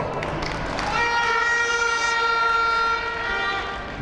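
Noise from a crowd, then a single steady horn note, rich in overtones, held for about two and a half seconds from about a second in.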